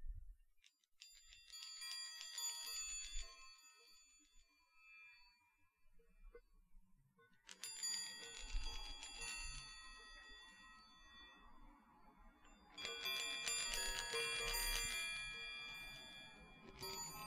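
Chinese baoding balls with chimes inside, turned in the hand and ringing with a high, shimmering bell tone. The ringing comes in three bouts, starting about a second in, about halfway and near the end, each fading over a few seconds, with a low rumble of the balls rolling under the later two.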